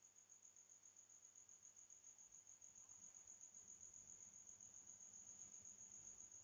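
Near silence with a faint, steady, high-pitched cricket trill in rapid even pulses.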